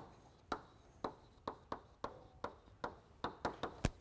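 Chalk writing on a blackboard: a series of short, sharp taps as each stroke hits the board, about two a second at first and coming faster near the end, where the loudest tap falls.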